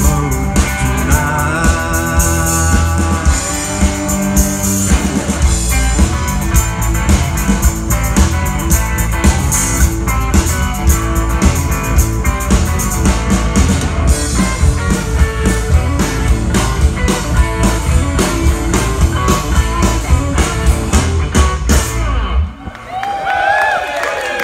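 Live blues-rock band playing an instrumental passage, an electric guitar lead over a steady drum kit and bass beat. About twenty-two seconds in, the band stops and the audience cheers and claps.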